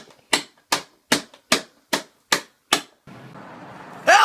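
A quick, even series of seven sharp smacks, about two and a half a second, each dying away at once; then a steady low hum near the end.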